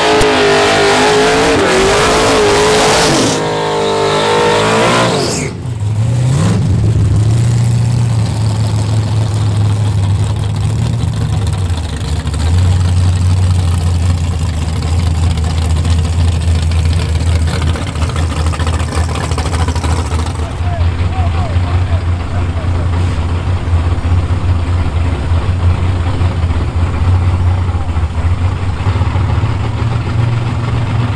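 Fox-body Mustang drag cars idling at the starting line with a steady low rumble, the engines stepping up briefly now and then as the cars roll into the lanes. A louder sound with shifting pitch covers the first five seconds.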